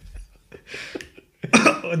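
A short, soft cough from a man, followed about a second later by a man starting to speak.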